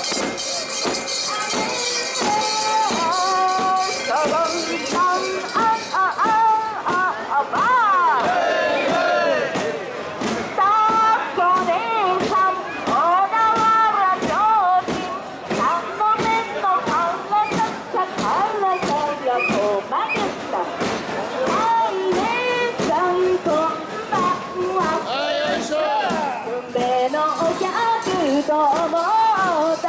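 Mikoshi carriers' massed voices chanting and singing a festival jinku, their pitch swooping up and down, over a regular beat about twice a second. A high steady ringing sounds in the first few seconds.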